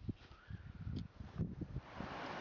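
Wind buffeting the microphone in irregular low gusts, with rustling and two light clicks as a rucksack is rummaged through.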